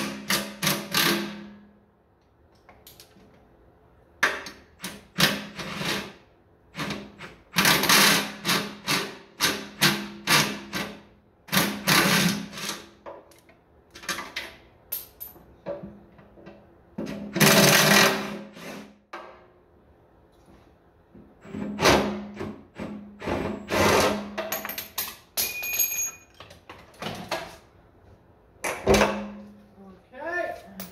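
Hand tools knocking and clanking on the tractor's metal parts in irregular bursts, with brief metallic ringing near the end and two quieter pauses.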